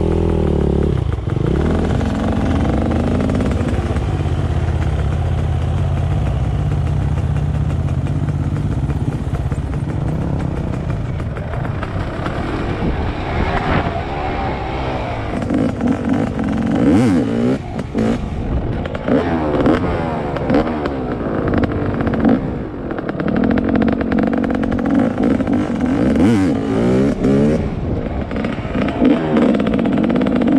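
Dirt bike engine, steady at a low idle for the first ten seconds or so, then revving up and down again and again as the bike is ridden off over dirt.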